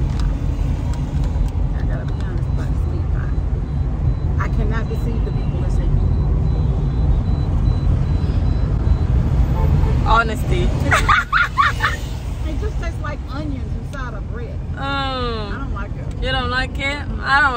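Steady low rumble of a moving car's road and engine noise heard from inside the cabin, with voices coming in over it near the end.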